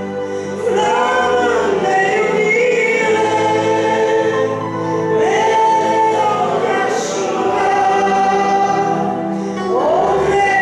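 A woman sings a slow gospel song into a microphone over an instrumental accompaniment with long held bass notes; her voice slides up into several held phrases.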